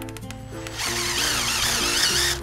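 Cordless drill driving a screw into a PVC downpipe join, starting about three quarters of a second in and running on with a wavering whine.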